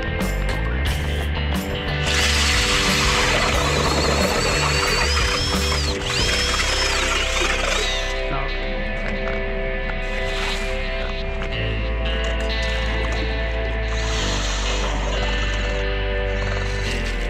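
Background music throughout. About two seconds in, a power drill turning an ice auger runs with a rising whine, stops briefly, and runs again for about two more seconds.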